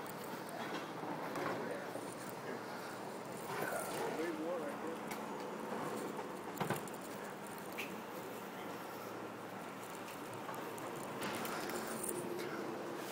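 Steady outdoor street background noise with faint distant voices, and a single short knock about six and a half seconds in.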